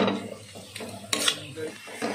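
A metal spatula stirring and scraping semolina (suji) in a metal kadhai, with sharp scrapes and knocks against the pan, the strongest at the start and about a second in, over a light sizzle.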